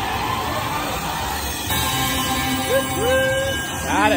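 Video slot machine game music and effects as FREE SPINS scatter symbols land and trigger the free-spins bonus. A few sliding tones come about three seconds in, and a quick sweep of tones comes right at the end as the bonus transition starts.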